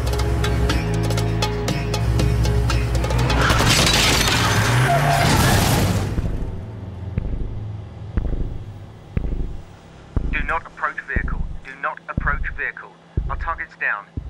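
Gunfire from police marksmen shooting a suspect, mixed with a dramatic film score of sustained low notes. A dense run of sharp cracks builds to a loud burst that cuts off about six seconds in, followed by sparser low thumps and short bursts of voice.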